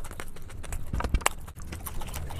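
Close-miked eating sounds: crunchy chewing, with irregular sharp crackles and mouth clicks and a few heavier bites about a second in.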